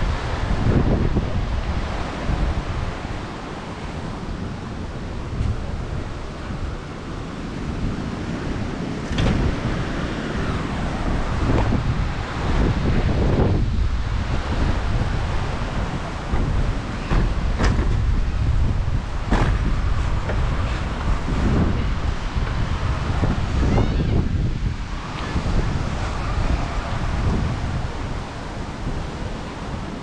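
Wind buffeting the microphone of a camera carried on a moving bicycle, a loud, uneven rumble with a few brief clicks and knocks in the middle stretch.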